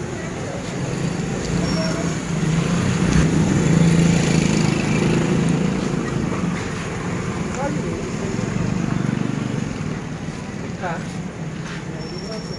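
A motor vehicle's engine running close by, its steady low hum growing louder over the first few seconds and easing off after the middle, with voices in the background.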